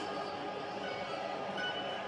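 WM-1948R automatic transformer-coil taping machine running with a steady mechanical whir, a few held tones over an even hum.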